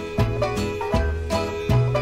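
Jug band playing an instrumental passage, led by plucked banjo over a bass line, with an even beat of about two and a half strokes a second.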